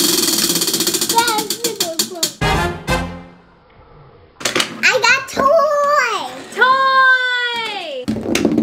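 Prize wheel spinning, its pointer flapper clicking rapidly against the pegs, the clicks slowing and stopping about two seconds in. After a short lull, a brief musical sting with gliding voices plays.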